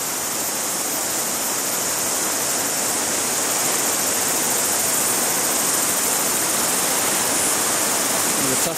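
Fast, shallow river water rushing over a boulder riffle and rapids: a steady, unbroken hiss of running water.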